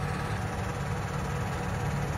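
Tractor engine running steadily at low revs, a low rumble.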